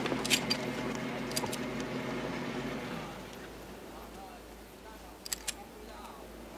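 A vehicle engine running with a steady hum that dies down about halfway through. Sharp clicks come through it, including a quick pair near the end.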